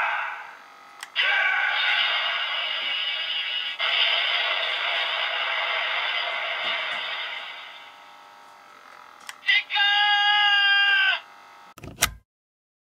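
DX Blazar Brace toy playing its electronic sound effects through its small built-in speaker: after a click, a dense synthetic effect runs for several seconds and fades, then after another click a short steady-pitched chime of about two seconds.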